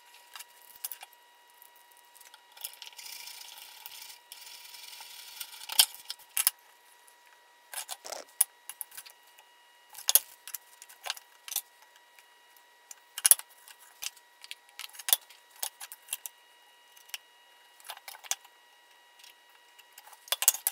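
Clicks and clatter of hand tools and a wooden board being picked up and set down on a wooden workbench, with a few seconds of steady scraping near the start.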